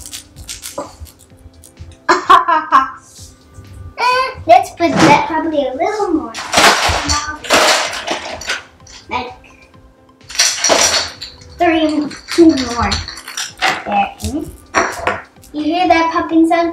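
Ice cubes and dishes clinking and clattering in a plastic mixing bowl, in a few sharp bursts, over a child's voice and music.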